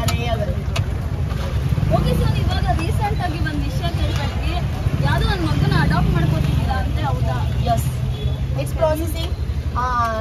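People talking over a steady low rumble.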